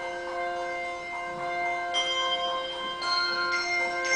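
A handbell choir playing: held chords of handbells ringing on, with new higher bells struck about two seconds in and again near the end.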